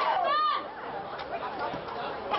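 Spectators talking: a voice is clear in the first half-second, then quieter mixed chatter.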